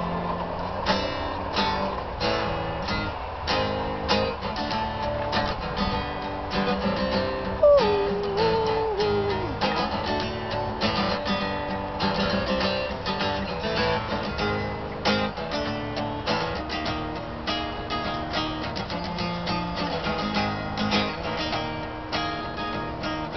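Steel-string acoustic guitar strummed steadily through an instrumental passage of a song, with no singing. About eight seconds in, a short tone slides downward over the strumming.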